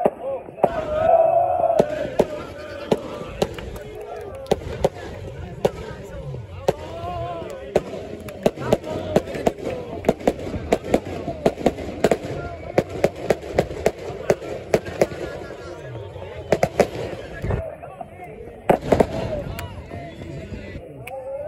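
A group of people clapping in rhythm, sharp claps a couple of times a second, over shouting and chanting voices; the voices are loudest in the first two seconds.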